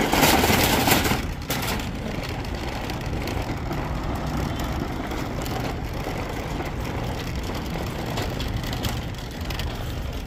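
Metal wire shopping cart rolling across parking-lot asphalt, its wheels and basket rattling steadily, loudest in the first second or so.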